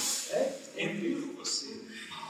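Indistinct speech, broken into short phrases with sharp hissing consonants.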